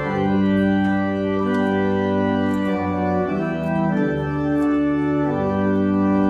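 Church pipe organ playing held chords with a deep pedal bass, the chord changing about once a second.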